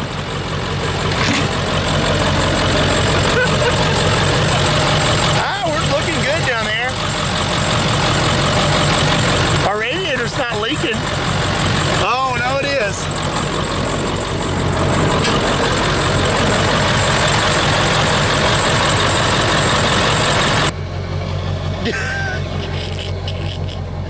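Ford F-350's 7.3 Powerstroke turbo-diesel V8 idling steadily; the sound drops suddenly in level near the end.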